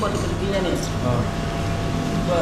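Steady low hum of restaurant ventilation, with a few words of speech at the very start.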